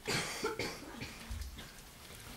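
A man gives a short cough close to the microphone at the start, followed by a few softer throat sounds.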